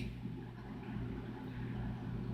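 Steady low background hum with faint hiss, with no distinct event.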